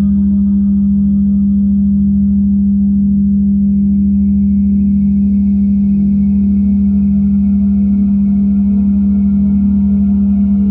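Meditation drone soundtrack: a loud, steady low tone with a rapid even pulsing beneath it, and thin, ringing higher tones held over it, one of which enters about three and a half seconds in.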